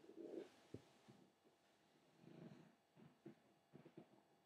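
Near silence: room tone with a few faint, short low murmurs and soft clicks.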